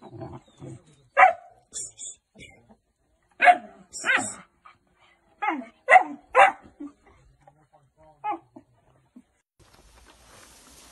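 Alabai (Central Asian Shepherd) puppies barking and yelping in a string of short, sharp bursts while squabbling over a bowl of raw meat, the loudest calls between about one and seven seconds in and a last one near the end.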